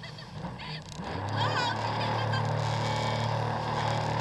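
Jet ski engine catching about a second in and then idling steadily with a low, even hum. A few short high squeaky calls sound over it.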